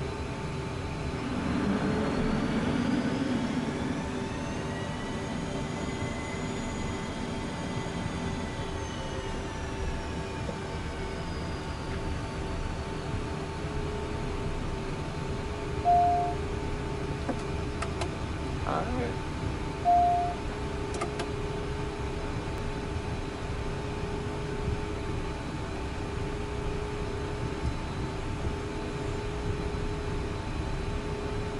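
Citation M2's twin Williams FJ44 turbofan engines running at low power, heard inside the cockpit as a steady hum with a whine that rises within the first few seconds and falls back by about ten seconds in. Two short electronic beeps, about four seconds apart, are the loudest sounds.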